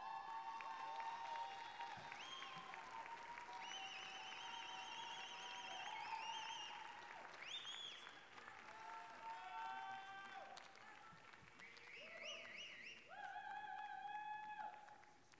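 Light audience applause over soft background music of long held, wavering notes.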